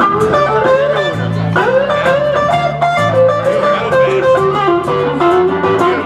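Live blues guitar trio playing an instrumental passage: a lead guitar line with bent, gliding notes over strummed acoustic guitar and a repeating low bass figure.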